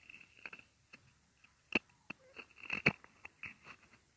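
Scattered soft clicks and crackles, with two sharper clicks near the middle: handling noise on a wired clip-on microphone.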